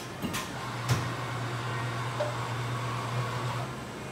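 Two sharp clicks, then a steady low hum of a machine running for about three seconds that stops shortly before the end.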